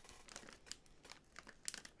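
Faint crinkling and scattered small crackles of a resealable popcorn bag being handled and tugged at while it resists opening.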